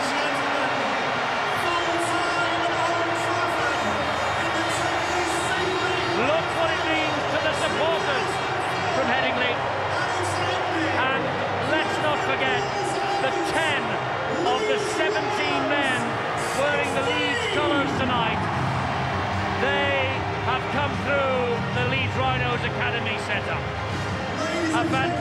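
A stadium crowd and players celebrating a championship win at full time: many voices shouting and singing over music.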